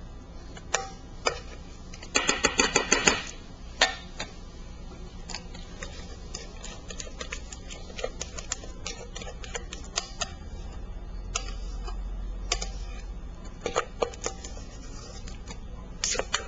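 Light clicks and taps of a kitchen utensil against a bowl and mold while cream is spread over the first layer of a charlotte, with a quick run of rapid clicking about two seconds in. A low steady hum runs underneath.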